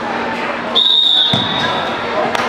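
Referee's whistle, one long steady blast starting less than a second in, signalling the fall (pin). A dull thump comes about halfway through, over gym chatter.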